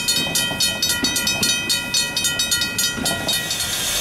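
Railway level-crossing alarm bell ringing in rapid, even strikes, stopping shortly before the end.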